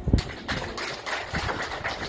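Audience applauding, many hands clapping, just after a low thump at the very start.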